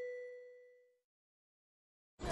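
The fading ring of a single bell-like chime that ends the intro music: one clear tone with fainter high overtones, dying away about a second in.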